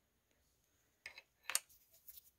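A few light metallic clicks: a short cluster about a second in and a sharper click half a second later, as the brake hose's aluminium banjo fitting is handled against the brake bracket.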